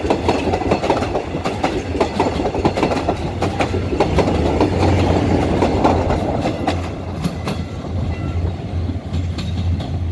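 Mugunghwa-ho passenger train passing close by, its wheels clattering and clicking over the rail joints. A steady low drone comes in with the diesel generator car at the rear. The clatter thins out about seven seconds in as the train moves away.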